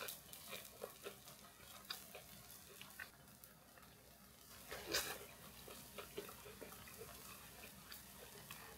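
Faint, scattered clicks and crunches from metal tongs tearing a crisp pan-fried potato pancake on a ceramic plate and from it being chewed, with one louder crunch about five seconds in.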